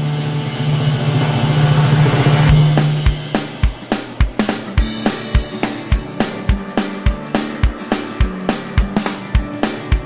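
Background music: a sustained low note swells for the first couple of seconds, then a steady beat comes in with a kick drum about twice a second.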